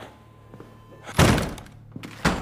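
A door banging, a single loud thud about a second in that dies away quickly.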